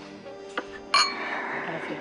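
Two wine glasses clinking once in a toast, about a second in, with a bright ringing tone that fades over about a second.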